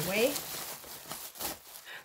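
Thin plastic shopping bag rustling and crinkling as hands work in it, in irregular short crackles.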